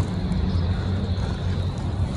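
Steady low rumble of outdoor city background noise, unbroken and without any distinct event.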